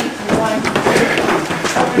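Footsteps of several people climbing stone steps, irregular taps and scuffs, with voices of the group faint in the background.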